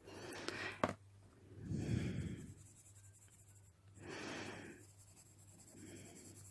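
Faber-Castell Polychromos colored pencil rubbing across coloring-book paper in loose shading strokes, heard as three faint scratchy bursts, with one light click just before a second in.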